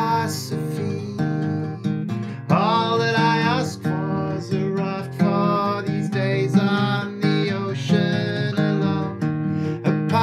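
Larrivée acoustic guitar strummed steadily in a folk song, with a man singing over it; about two and a half seconds in the voice slides up into a long held note.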